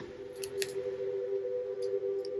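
A few quiet, sharp clicks and taps from a compact book-style eyeshadow palette being opened and handled to pick up a shade, over a steady low hum.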